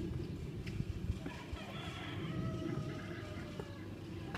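A distant pitched animal call, one held call of about two seconds starting about a second in, over a steady low rumble.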